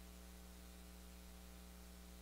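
Near silence: a steady electrical mains hum with hiss, without change.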